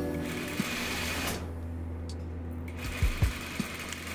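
Industrial lockstitch sewing machine stitching muslin in two short runs with a pause between, its motor humming steadily underneath. A few low thumps come about three seconds in.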